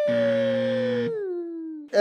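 A game-show 'wrong answer' buzzer sound effect, a harsh flat buzz lasting about a second, marking a contestant's rejection. Under it a long drawn-out note slides slowly down in pitch and fades out just before the end.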